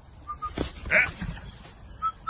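A short animal call about a second in, preceded by two faint short high chirps.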